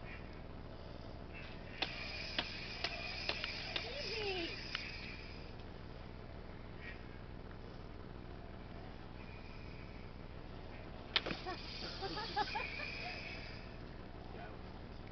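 Toy light sabres knocking together in a series of sharp clacks, about half a dozen starting about two seconds in, then another short flurry near the end.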